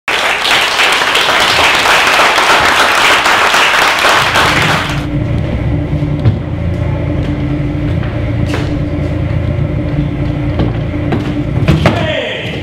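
Audience applauding, then, about five seconds in, a car engine sound effect: a low, steady idling rumble with a hum, a sharp knock near the end.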